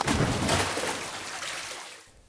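Splash sound effect of a body dropping into a pot of water. It starts suddenly and dies away over about two seconds.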